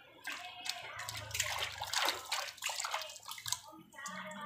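A hand swishing and rubbing a toy in a plastic bucket of water: irregular sloshing and splashing.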